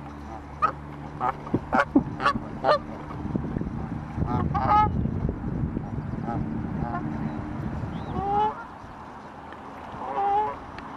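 Canada geese honking: a quick run of about seven short honks in the first three seconds, then a few more calls around the middle and near the end, over a low rumbling noise.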